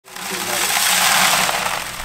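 Gravelly pay dirt poured from a bucket onto the wire-mesh screen of a plastic gold classifier sitting on another bucket: a steady rushing hiss of grit and pebbles rattling onto and through the screen.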